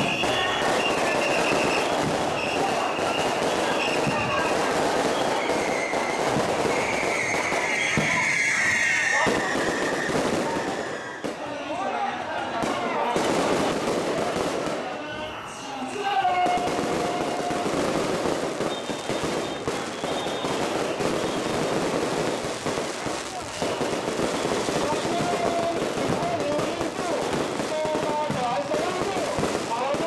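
Strings of firecrackers crackling continuously over the voices of a packed crowd, dipping briefly about eleven and fifteen seconds in: the firecrackers that send off a Mazu palanquin as it departs on procession.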